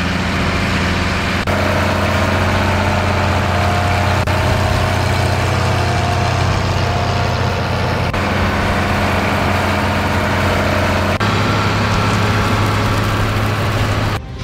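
Large farm tractor engine running steadily while it tows a hose-reel slurry injector across a field. The steady engine note shifts slightly three times, a little after one second, about eight seconds in and about eleven seconds in.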